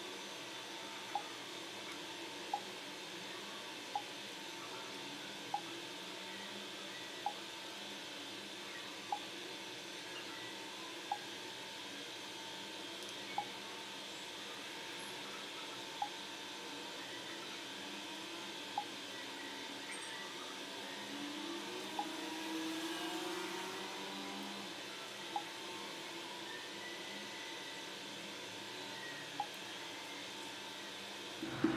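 Single water drops falling into a bathroom sink, each a short sharp plink, coming about once a second at first and slowing to one every three or four seconds, over a steady faint room hiss.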